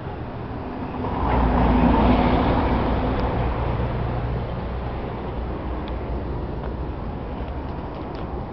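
Road traffic: a vehicle passes close by about a second in, growing louder for a couple of seconds and then fading, over a steady low engine drone.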